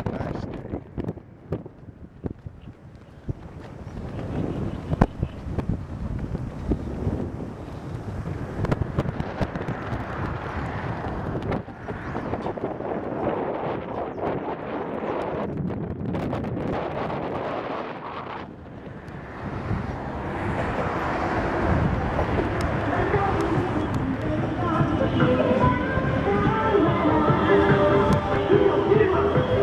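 Wind buffeting the microphone over a haze of street noise while walking, then music with singing playing in the street, growing louder over the last few seconds.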